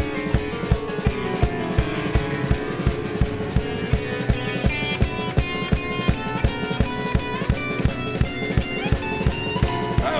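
Blues band playing live through an instrumental passage: a drum kit keeps a steady kick-drum beat while a guitar picks a melody of short notes over it.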